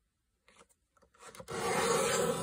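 Paper trimmer cutting through a file folder: a steady scraping cut that starts about one and a half seconds in, after a silent stretch.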